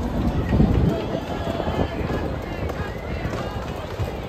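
Baseball stadium crowd: many spectators' voices mixing together, steady throughout.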